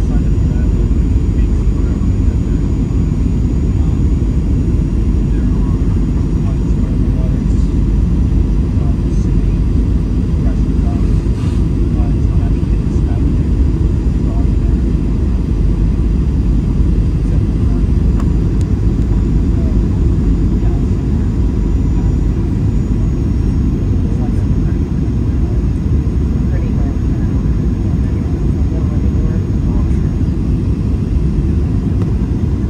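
Steady cabin noise of a Boeing 737-800 on approach: a low, even rumble of airflow and the CFM56 turbofan engines, with a faint high whine above it.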